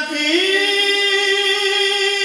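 A man singing a naat unaccompanied, sliding up into one long held note.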